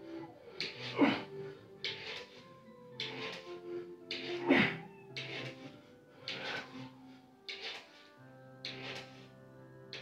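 Sharp, hard breaths about once a second from a man doing push-ups, with louder strained grunts about a second in and again about four and a half seconds in, over steady background music from a children's TV show.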